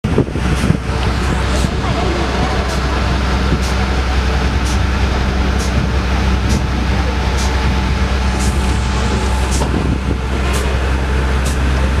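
Park toy train running, heard from aboard: a steady low hum with a sharp click about once a second.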